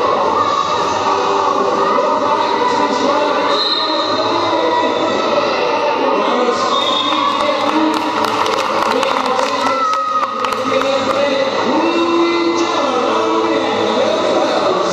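Music playing over a sports-hall PA, mixed with a crowd's voices and the clatter of quad roller skates on the wooden floor.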